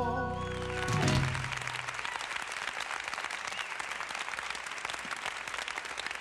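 The last chord of a gospel song's backing music dies away about two seconds in, and steady applause follows.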